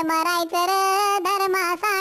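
High-pitched, pitch-shifted singing voice of the Talking Tom cartoon cat singing a Marathi song in held notes, with short breaks between phrases.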